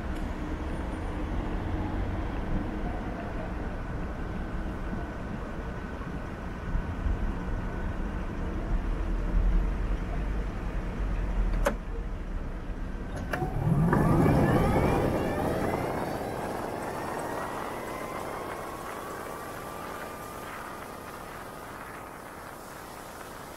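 City street traffic around a stopped e-scooter: engines rumbling at low pitch, with two sharp clicks and then a loud vehicle passing about fourteen seconds in, its sound sweeping in pitch and then fading away.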